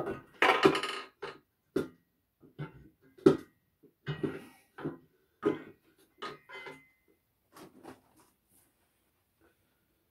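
Metal knocking and clanking as a BMW N52 crankshaft is lifted out of its engine block: a string of separate knocks, some ringing briefly, the loudest about half a second and three seconds in, dying away near the end.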